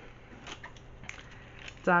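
Faint rustling and a few soft clicks of a clear plastic wax-melt pack being handled.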